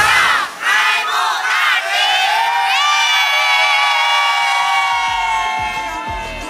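A group of people cheering and shouting together: several short rising shouts, then one long held group shout that fades near the end.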